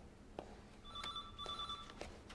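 Electronic office telephone ringing with a steady two-tone trill, starting about a second in, with a brief dip midway through the ring. Footsteps on a hard floor tap along at about two a second.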